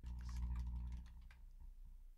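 Computer keyboard being typed on, a quick run of key clicks in the first second and a half, over a faint low hum.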